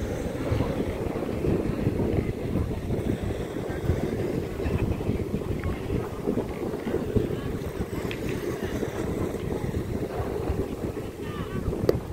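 Wind buffeting the microphone: a steady, gusting low rumble.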